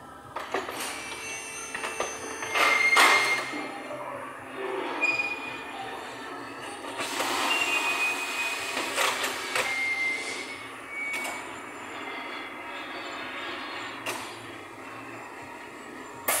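Workshop handling noise as a car wheel and tyre is lifted and offered up to the hub of a car on a hoist: irregular knocks, scrapes and a few short metallic squeals, loudest about three seconds in and again from about seven to ten seconds.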